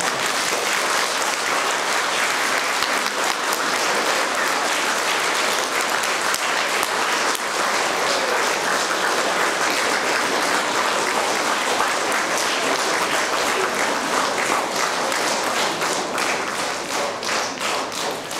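An audience of schoolchildren and teachers applauding steadily in a hall, thinning out near the end.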